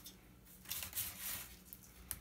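Faint handling noise from the metal chassis and panel of a disassembled IBM LCD monitor being held and pulled apart: after a quiet first half second, a string of soft clicks, taps and scrapes.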